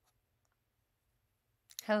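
Near silence with a low room hum and a couple of faint clicks, then a woman starts speaking near the end.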